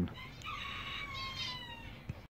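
A single long animal call that holds a high pitch and slides slightly down, lasting over a second.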